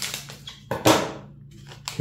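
A foil trading-card pack wrapper being opened by hand: a short, sharp crinkle of the wrapper just under a second in, with lighter rustling at the start.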